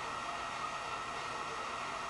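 Steady background hiss with a faint high hum in it, even in level, and no other distinct sound.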